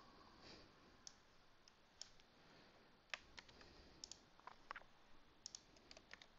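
Faint, irregular clicks of a computer mouse and keyboard, about a dozen spread unevenly over a few seconds.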